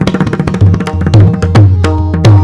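Pakhawaj played solo in a fast passage. Rapid strokes on the treble head ring at a pitch, mixed with deep, resonant strokes on the bass head.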